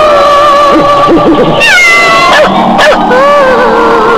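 Horror film soundtrack: a held, wavering high tone, joined about one and a half seconds in by falling, cat-like yowls, with two short sharp clicks around the three-second mark.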